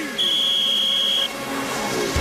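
Cartoon police whistle: one steady, high, shrill blast lasting about a second. Near the end a rushing swoosh builds as a sled speeds in.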